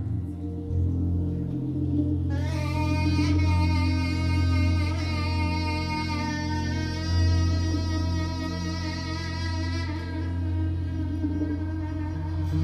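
Live jazz-fusion band playing: a saxophone comes in about two seconds in and holds one long, slightly wavering note for roughly eight seconds over a steady low bass and keyboard.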